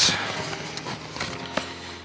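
Soft rustling of paper and a roll of stickers being handled and pulled from an envelope, with a couple of light clicks.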